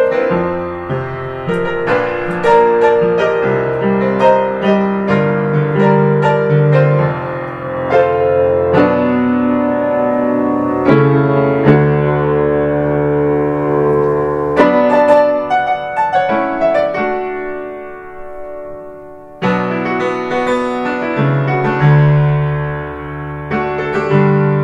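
Upright piano playing a pop song arrangement, melody over sustained chords. About seventeen seconds in, a held chord fades away for a couple of seconds, then the playing comes back in suddenly and loudly.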